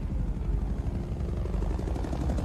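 Helicopters flying overhead, their rotors chopping rapidly, with a whine falling in pitch at the start.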